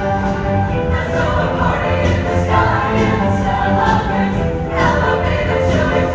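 Mixed show choir singing in full chorus over instrumental backing, with low bass notes held under the voices.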